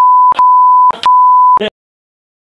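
A steady, loud, high-pitched censor bleep tone laid over a man's speech, sounding three times in quick succession. Short snatches of his voice show through the brief gaps. Everything cuts off suddenly near the end.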